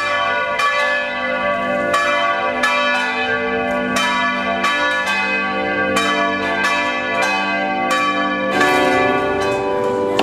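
Bells struck in a steady rhythm, about three strikes every two seconds, each ringing on, over a sustained lower tone that shifts pitch near the end.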